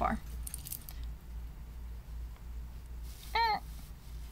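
Faint jingling and clinking of bracelets and beaded jewellery, with soft handling of the wig hair, as hands settle a wig on a woman's head, over a low steady hum. Near the end, a short murmured 'mm' with a rising-falling pitch.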